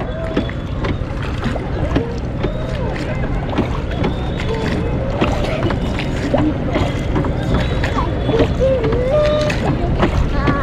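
Rowboat being rowed on a lake: a steady rush of water around the hull and oar, broken by short splashes of the oar strokes, with faint distant voices over it.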